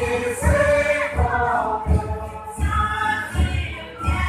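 A group of voices singing a song together, with a steady low beat thumping about once every 0.7 seconds beneath the voices.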